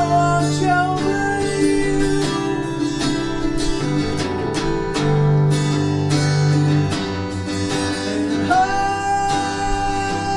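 Acoustic guitar strumming chords under a harmonica played into a hand-held microphone, carrying a melody of long held notes that bend in pitch near the end.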